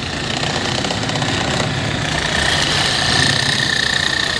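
A motor vehicle engine idling steadily, slowly growing louder, with a faint steady high whine joining about halfway through.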